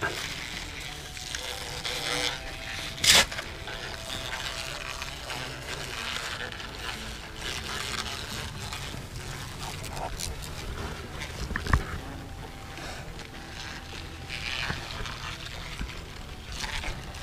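Steady low outdoor background noise with one sharp knock about three seconds in and a fainter knock near twelve seconds.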